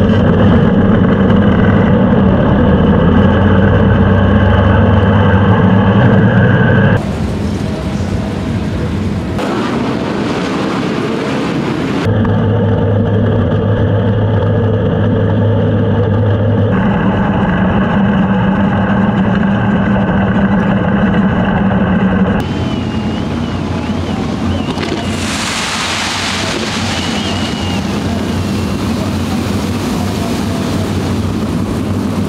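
Sprint car V8 engines running at a steady, even speed, heard from onboard the cars. The sound switches abruptly several times. For the last several seconds it is a rougher, noisier engine sound.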